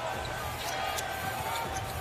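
A basketball bouncing on a hardwood arena court as the ball is brought up, over a steady background of arena crowd noise with faint voices.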